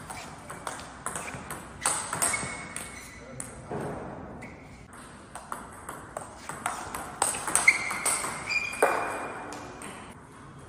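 Table tennis rally: the ball clicks sharply off the bats and the table at an irregular pace, echoing in a large hall. There is a short lull partway through, and the hits are loudest near the end.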